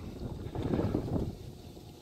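Wind buffeting the microphone: a low rumble that swells in the middle and fades away.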